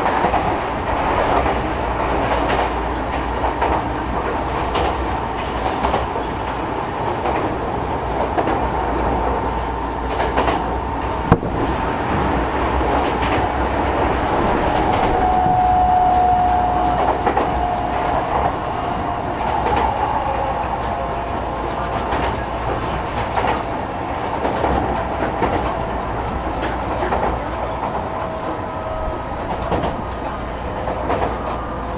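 Tokyo Metro 10000 series electric train running: a steady rolling rumble with repeated wheel clicks over rail joints, one sharp click about eleven seconds in, and a faint whine that shifts in pitch.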